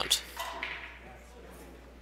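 Quiet room tone in a hall: a low steady background hum and hiss, with the commentator's voice trailing off at the very start and a brief faint murmur about half a second in.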